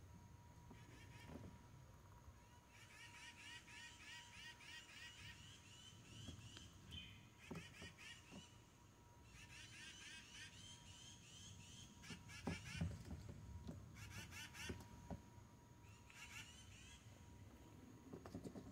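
Faint animal calls: several bursts of rapid, repeated chirping notes, each burst lasting a few seconds, with a few soft thumps in between.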